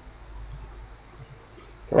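Several faint, scattered computer mouse clicks over a low steady hum, as the online video is being paused and replayed; a man's voice begins at the very end.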